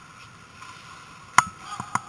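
Three sharp clacks of ice hockey play, from stick, puck and boards, about one and a half seconds in and near the end, the first the loudest, over the steady hiss of the rink.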